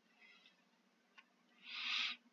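Near silence, then a short soft breath near the end, a man drawing in air between remarks; a faint click comes just after a second in.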